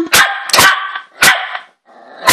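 Small puppy barking: about three sharp, high barks in quick succession. These are alarm barks at an object that appears to have scared her.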